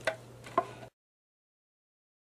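Two short, sharp clicks about half a second apart over a faint steady hum, then the sound cuts off abruptly into silence.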